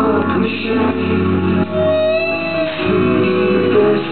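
Live rock band playing a slow song through a club PA, electric guitar over sustained chords, with a long held note about halfway through. It is heard through a compact camera's microphone in the crowd, so it sounds dull and muffled.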